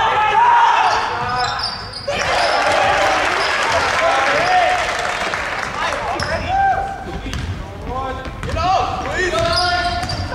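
Basketball dribbled on a hardwood gym floor during play, mixed with shouts from players and spectators.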